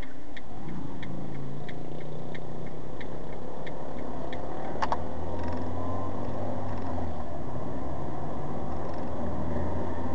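Steady engine and road noise of a car driving, heard from inside the cabin. A light ticking, about three ticks a second, runs through the first few seconds, and there is one sharp click about halfway.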